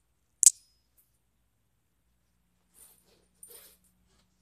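A single sharp, loud snap about half a second in, followed near the end by two short, soft rustles.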